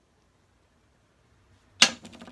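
A tossed coin lands with one sharp metallic clink near the end, then rings and rattles briefly as it settles: a yes/no coin flip coming to rest.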